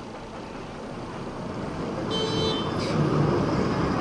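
Street and bus-station traffic noise, growing louder, with a brief high-pitched horn toot about two seconds in.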